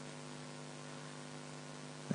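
Steady electrical mains hum with several pitched overtones over a faint hiss.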